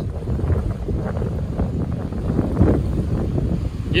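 Wind buffeting the microphone: an uneven low rumbling noise.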